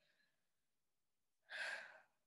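Near silence, then about one and a half seconds in a woman's short breathy sigh.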